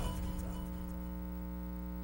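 Steady electrical mains hum with a buzz of many overtones, holding at one level throughout.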